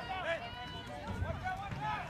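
Several voices shouting short calls at once across a lacrosse field, players and sideline calling out during play, heard at a distance.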